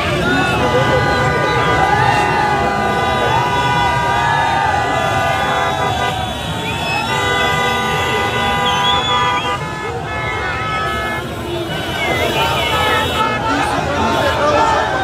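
Vehicle horns held long and steady, several tones at once, with short breaks around the middle, over the voices of a large crowd.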